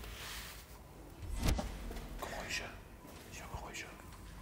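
Faint whispered voices, with a single sharp knock about one and a half seconds in.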